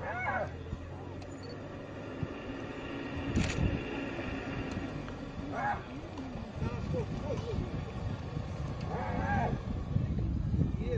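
A few short voice-like calls that rise and fall in pitch: one at the start, one about five and a half seconds in and one near the end. A low engine hum from the idling safari vehicles fades out about two seconds in.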